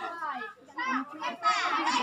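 A group of children's voices chattering and calling out, high-pitched, with a brief lull about half a second in.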